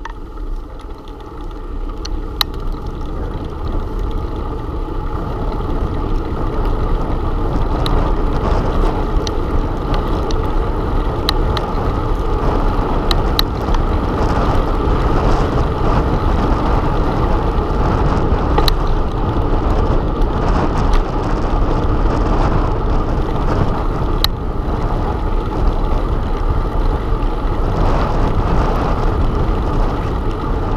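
Wind rushing over a bike-mounted camera's microphone, mixed with the rumble of bicycle tyres on pavement. It builds over the first several seconds as the bike picks up speed, then holds steady, with a few faint clicks from the bike.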